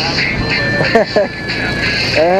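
Short, broken fragments of speech over a steady noisy background with music.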